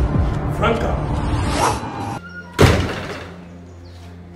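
Background music stops about two seconds in, followed by one loud thud of a wooden front door being shut.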